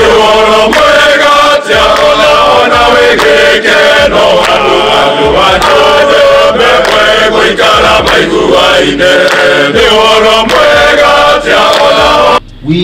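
A group of men's voices singing a hymn together in a chant-like style, with sharp hand claps throughout.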